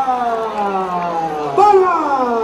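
A long, drawn-out vocal shout, held on one vowel with its pitch sliding slowly down. A second drawn-out shout starts near the end.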